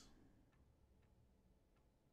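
Near silence: room tone with a few faint, widely spaced ticks from a computer mouse's scroll wheel as a web page is scrolled.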